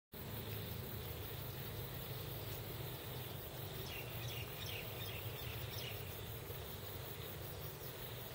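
Steady outdoor background noise with a low hum and faint insect chirring. A few faint, short high-pitched calls come about halfway through.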